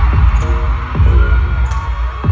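Loud live pop music over an arena sound system, caught on a phone: deep bass beats about once a second with held synth tones, over a steady wash of crowd noise.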